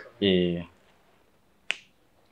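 A man's voice holding a short hummed note, then, about a second later, a single sharp click.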